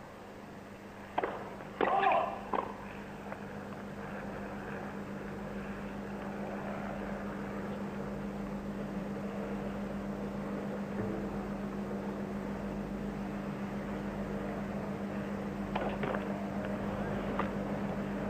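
Helicopter circling overhead: a steady engine-and-rotor hum with a low tone that slowly grows louder. A few brief sharp hits sound near the start and again near the end, the last of them the serves of a double fault.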